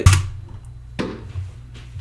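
A heavy thud with a deep boom at the start that dies away over about half a second, then a single sharp knock about a second later.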